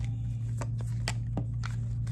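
A deck of tarot cards shuffled by hand, with irregular sharp card snaps and flicks, over a steady low hum.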